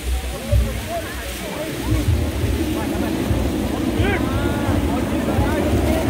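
Steady low rumbling noise as a large balloon's plastic envelope fills and moves, with a brief shout about four seconds in.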